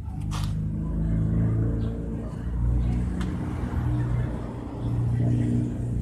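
A motor vehicle engine running: a low, steady hum that swells and fades in loudness every second or so, with a couple of light clicks.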